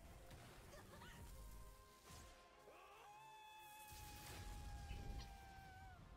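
Near silence with faint audio from the anime being watched: one held tone, then a second, longer held tone that sags slightly in pitch near the end.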